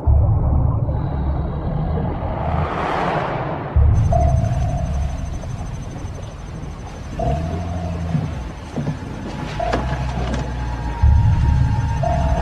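Film score of low sustained notes that change every few seconds. A noisy whoosh swells and rises in pitch in the first few seconds.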